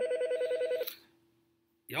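A short electronic alert, a rapid warbling trill between two tones like a telephone ring, lasting about a second. It is the draft-simulator website's trade-offer notification.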